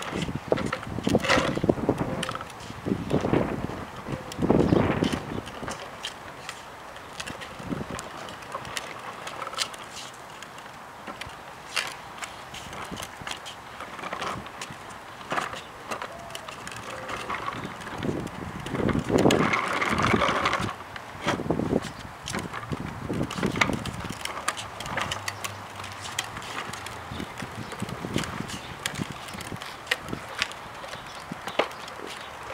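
A toddler's plastic tricycle rolling on a concrete sidewalk: its hard plastic wheels make an uneven rumble, broken by many scattered clicks and knocks.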